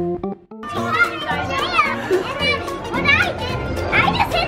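Background music cuts off right at the start. After a brief gap, young children's high-pitched voices and squeals as they play fill the rest.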